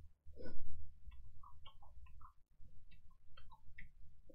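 Small scattered clicks and mouth sounds of a person chewing and eating, with one louder short sound about half a second in.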